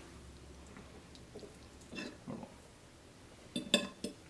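A fork clicking and scraping faintly on a plate while cutting a piece of fish, with a few louder clinks near the end.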